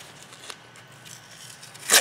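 Tape being peeled off a plastic trading-card holder: faint rustling, then one short, sharp rip just before the end.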